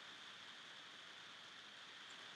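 Near silence: faint steady hiss of a microphone's room tone.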